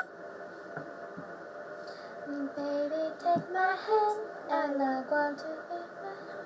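A young woman singing a short melody unaccompanied, starting about two seconds in, with short held notes stepping up and down.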